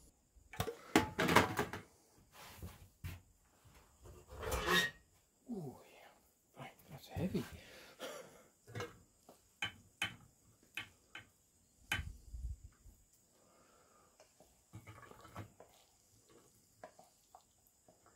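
Enamelware plates set down and stir-fry scraped from a pan onto them with a spatula: irregular clinks, clatters and scrapes of metal and enamel, with one heavier knock about twelve seconds in.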